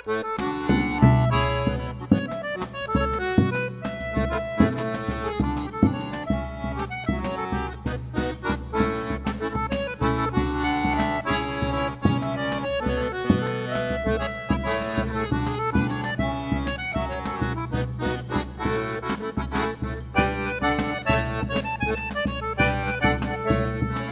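Forró trio playing the instrumental opening of a baião: accordion melody over a steady beat of zabumba bass drum strokes, with triangle.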